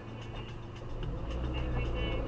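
A car engine idling, heard from inside the cabin, its low hum growing louder about a second in.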